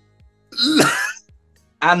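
A short vocal outburst from one person, about half a second long, starting about half a second in after a near-silent pause.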